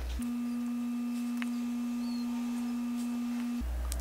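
A steady electronic tone at one low pitch, like a plain sine tone. It cuts in just after the start, holds for about three and a half seconds, and cuts off shortly before the end.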